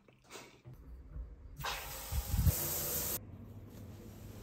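Shower water spraying, a loud steady hiss that starts suddenly about one and a half seconds in and cuts off a little over a second and a half later.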